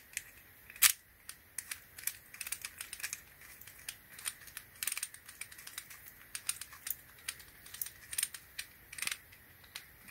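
Small hard-plastic clicks and taps of a thumb screw being pushed through and threaded into a GoPro's mounting fingers on a plastic handlebar mount, with the loudest click about a second in.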